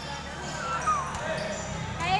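Basketball being dribbled on the court during play, with faint voices of players and onlookers.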